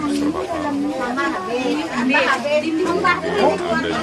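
Several people talking at once, overlapping voices too indistinct to make out. A low steady hum comes in about three seconds in.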